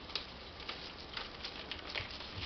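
Faint handling noise: soft rustling with a few light taps, over a low steady hum.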